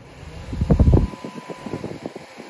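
Small 12 V clip-on electric fan running, its airflow blowing onto the microphone: a loud rumbling gust of wind noise about half a second in, easing after a second to a softer steady rush, with a faint thin whine.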